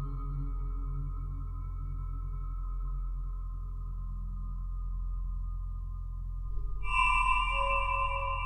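Ambient modular synthesizer music: sustained electronic tones over a steady low drone, slowly fading. About seven seconds in, a louder, brighter chord of high tones enters.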